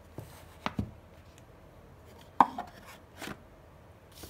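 A hard Rolex watch box handled on a wooden table: a few knocks and taps as it is moved and set down into its cardboard outer box, the loudest knock about two and a half seconds in.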